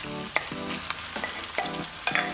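Beef mince sizzling in a hot frying pan as raw mince is tipped in on top of seared beef: a steady frying hiss with scattered crackles and pops.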